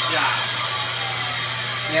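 Electric miter saw motor running steadily with a low hum, the blade spinning without cutting.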